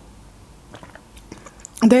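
Faint close-up mouth sounds of a woman drinking and swallowing juice from a glass, followed by a few small lip and mouth clicks in the second half.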